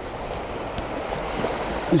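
Small waves washing onto a pebble shingle beach: a steady, gentle rush of water over stones.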